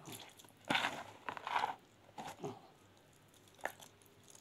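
Fingers pressing rice stuffing into a hollowed zucchini by hand: a few short, wet crunching squelches. The loudest comes about a second in.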